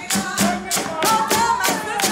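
Gullah folk song: a woman's voice singing over a steady percussive beat of about three strokes a second, with a washboard being played.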